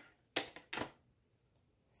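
Two short, faint clicks about half a second apart as hands work a 15-inch Schacht Cricket rigid heddle loom, handling its heddle over the woven cloth.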